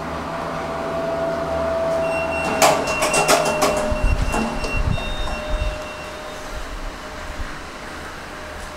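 Express Lifts elevator arriving at the ground floor: a steady hum from the moving car with a held tone, then about two and a half seconds in a quick run of clicks and clunks as the car stops and the doors unlock and slide open, with a thin high steady tone over the door movement. The mechanical noise then drops to a lower background hum.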